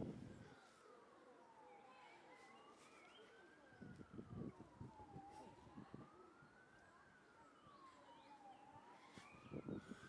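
Faint emergency-vehicle siren wailing, its pitch slowly rising and falling about every three seconds. A few low thumps and rustles come around the middle and again near the end.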